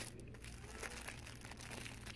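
Faint crinkling of the cellophane wrap on packs of paper napkins as they are handled and pulled from a store shelf, a scatter of small crackles.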